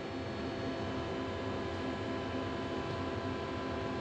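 Steady machinery hum and hiss with several faint steady tones.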